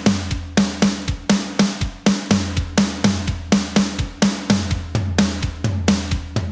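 Acoustic drum kit playing a linear single-stroke exercise: hand strokes alternating right and left, broken up by bass drum hits, in a steady repeating rhythm with the loudest hits about three a second.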